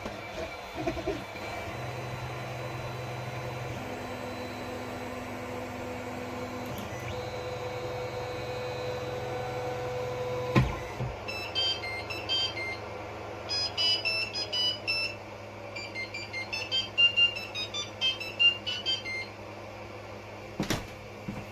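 3D printer's stepper motors whining at steady pitches that shift in steps as the bed and print head move, with a single click a little past the middle. In the second half come quick runs of short high-pitched chirps as the motors make rapid small moves.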